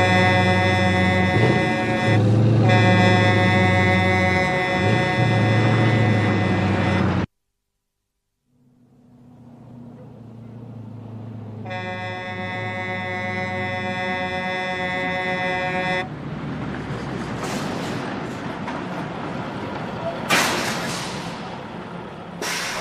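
Mack road train's air horn sounding a long, steady chord over the diesel engine's rumble, cutting off abruptly about seven seconds in. After a second or so of silence the engine fades back in and the horn sounds again for about four seconds, then the truck rolls up with a sharp burst of air-brake hiss near the end.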